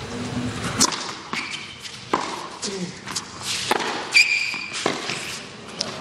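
Tennis rally on a hard court: four sharp racket strikes on the ball, each about one and a half seconds apart. A brief high shoe squeak on the court comes about four seconds in.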